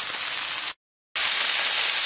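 Italian sausage patties sizzling steadily in hot grease in a stainless steel frying pan. The sizzle drops out completely for under half a second a little under a second in, then resumes.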